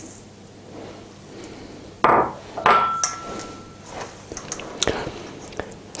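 Two knocks against a stainless steel mixing bowl about two seconds in, the second leaving a short metallic ring, then lighter clicks as a spatula works crumbs into the thick mixture.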